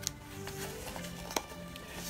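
Quiet background music with steady held tones, with two light clicks from cards being handled in a plastic binder sleeve, one right at the start and one a little past halfway.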